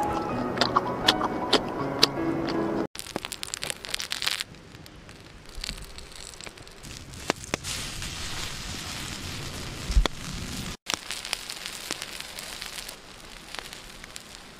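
Background music with crisp crunching clicks for the first few seconds, then, after a sudden cut, a steady hiss with scattered crackles and pops from food cooking over an open fire, broken by one low thump about ten seconds in.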